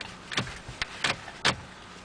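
About four sharp clacks and knocks in quick succession from a toddler working the steering wheel and controls of a parked van.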